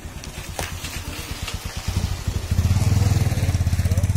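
A small engine running with a steady, rapid low pulse, growing clearly louder about halfway through as it comes closer or is revved.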